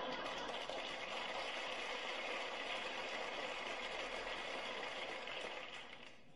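Studio audience laughing and applauding, a sustained reaction that dies away near the end.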